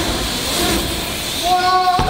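BMX tyres rolling fast over plywood ramps, a steady rushing noise. About a second and a half in, a person starts a long held shout.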